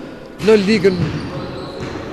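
A short burst of speech with a heavy echo from a large gym hall, fading into the hall's reverberant room tone.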